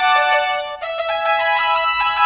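Electronic keyboard with a bright synth tone playing a single-line melody of notes lasting a few tenths of a second each, with a brief break just under a second in.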